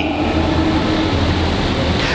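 A steady low rumble with a hiss over it and a faint hum, unchanging throughout.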